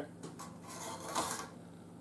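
Faint scratching of a metal scribe marking an aluminum strip along a speed square, over a low steady hum.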